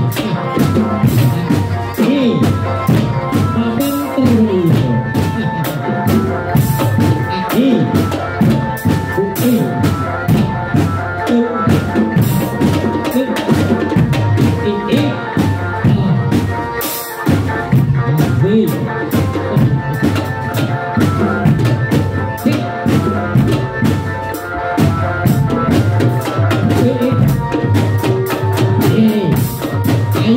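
Loud dance accompaniment music with fast, dense drumming over steady held tones, playing for a Bujang Ganong masked dance.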